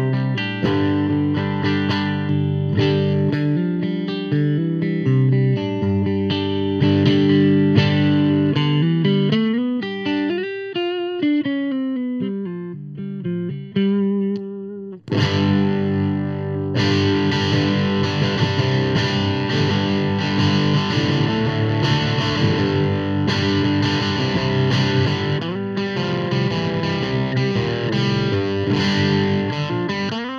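Epiphone Les Paul electric guitar strung with Elixir NanoWeb coated strings, played with distortion: picked notes and chords with string bends and vibrato, then after a brief break about halfway, thick, bright distorted chord riffing.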